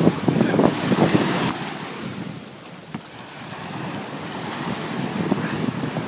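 Small waves washing through the shallows close to the microphone, with wind buffeting the mic. The water churn is loudest for the first second and a half, then eases to quieter lapping that builds again toward the end.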